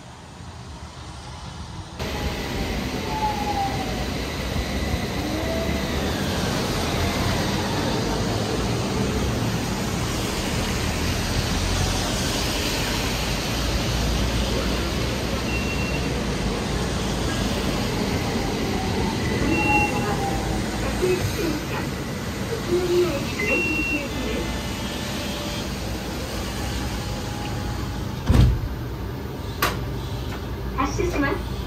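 Utsunomiya Light Rail electric tram pulling into a stop and moving off: a steady rumble and hiss of the tram and traffic on wet road, with a few gliding motor whines. Three short high beeps sound in the middle, and there is a sharp knock near the end.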